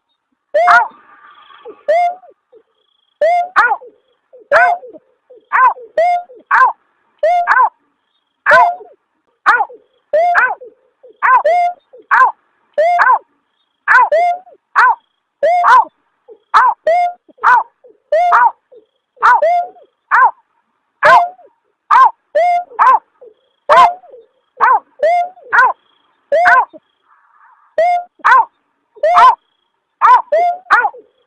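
Snipe (berkik) call from a lure recording: a long series of short, yelping 'aw' notes, each falling in pitch, about one or two a second and often in quick pairs. There are brief pauses about a second in and near the end.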